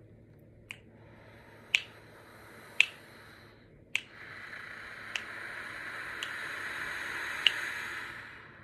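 A person breathing in slowly and evenly for about three seconds, then breathing out steadily for about four seconds, louder than the inhale: a controlled three-in, four-out breathing exercise for horn players. Sharp clicks keep the beat about once a second throughout.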